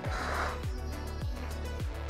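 Background music with a steady kick-drum beat, just under two beats a second.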